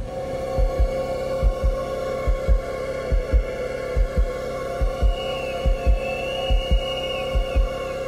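Dramatic suspense sound effect: paired heartbeat thumps repeating a little under once a second over a steady droning chord, with a thin wavering high tone joining in midway.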